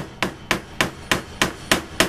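A mallet striking a leather stitching punch over and over, about seven sharp blows at roughly three a second, driving the punch through the leather to make a stitch hole.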